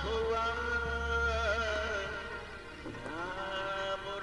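A man singing a slow Hindi film song into a handheld microphone. He holds one long note for about two and a half seconds, breaks for a breath, then starts a new rising note near the end.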